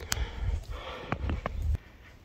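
Footsteps in snow: several short steps over a low rumble, both stopping a little before the end.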